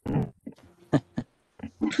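A person laughing in a few short, separate bursts over a video-call connection.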